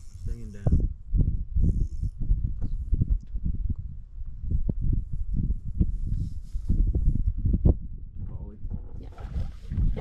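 Wind buffeting the microphone in uneven low rumbles.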